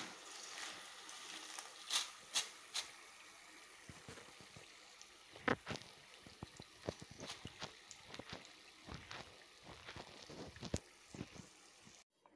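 Jackfruit strips deep-frying in hot oil: a faint, steady sizzle with scattered crackles and a few sharper clicks, the loudest a few seconds in.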